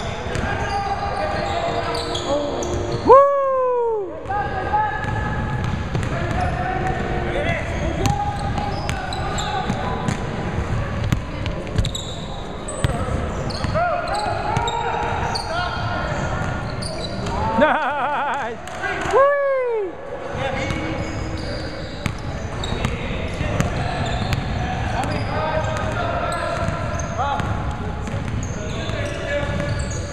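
Basketball game sounds on a hardwood gym floor: the ball bouncing, sneakers squeaking and indistinct player voices throughout. Two louder squeals falling in pitch stand out, about three seconds in and again just past the middle.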